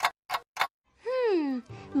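Cartoon soundtrack: three sharp ticks about a third of a second apart, then a smooth falling pitched tone about a second in, with background music starting near the end.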